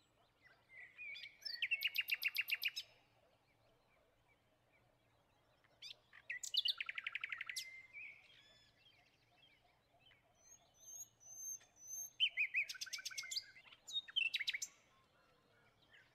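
A songbird singing three phrases, about a second and a half, six seconds and twelve seconds in. Each phrase is a few clear notes that break into a fast trill. Faint high, thin notes come between the second and third phrases.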